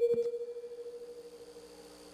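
A steady electronic tone from the sound system, fading away over about the first second and a half and leaving a faint steady hum.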